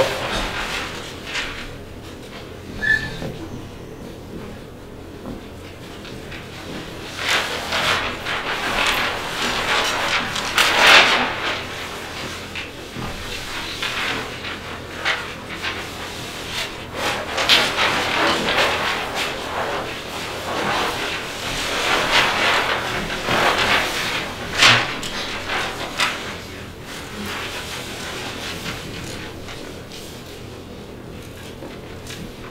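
Large paper plan sheets rustling and crackling as they are unrolled, turned and shuffled across a table, in uneven swells with sharper crinkles. Lighter for the first few seconds, busier from about seven seconds in until near the end.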